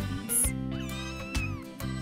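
Cartoon kittens mewing, thin high gliding mews, over light background music.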